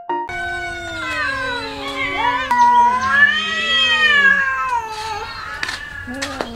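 Several domestic cats meowing at once. Their long, wavering, drawn-out meows overlap, typical of cats begging for food. A few sharp clicks come near the end.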